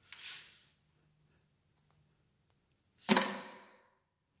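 Matches being struck to light candles. A soft, brief hiss comes at the start, then a sharper, louder strike about three seconds in that flares and fades over most of a second.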